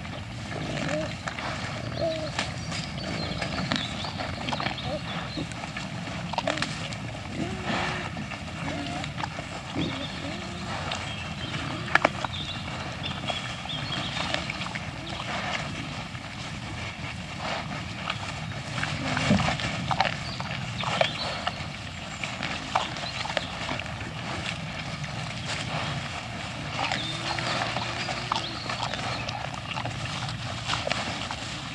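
A herd of wild boar feeding: repeated grunting, with frequent short crunches and clicks of feeding and scuffling over the food, and a sharp click about twelve seconds in.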